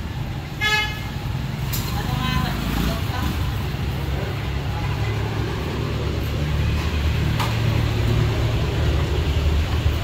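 Street traffic rumbling steadily, with a short vehicle horn toot a little under a second in and another brief pitched sound around two to three seconds in.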